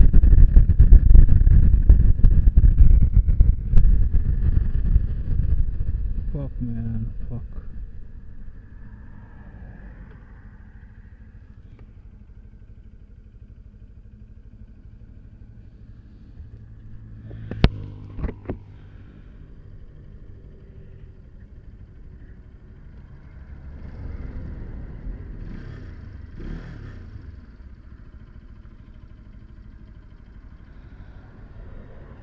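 Bajaj Pulsar RS200 motorcycle at highway speed with heavy wind and road rumble, fading as the bike slows and coasts to a stop after its gear lever has come off. Then a low steady background, with a few sharp clicks a little past halfway and a swell of sound near the end.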